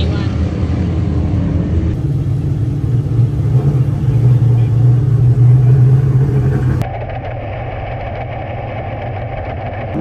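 Dirt modified race car engines running, heard across a few cut-together shots. The engine sound grows louder through the middle, then after a cut gives way to a quieter, steady hum.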